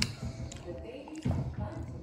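Indistinct voices in the room, with one sharp knock at the very start.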